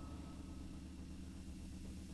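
Faint, steady low hum. A ringing tone fades away within the first half second.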